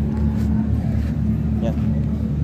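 A steady, low engine drone with a constant hum running under it, from motorised machinery running on the site.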